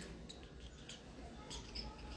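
Faint handling noise close to the microphone: a few small clicks and short high squeaks over a low steady room hum.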